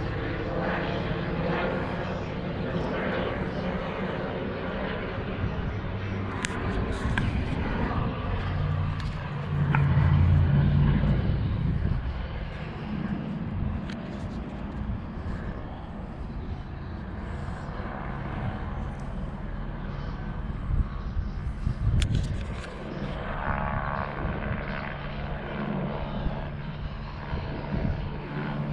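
Police helicopter circling overhead, its rotor and engine a steady drone that is loudest for a couple of seconds about ten seconds in.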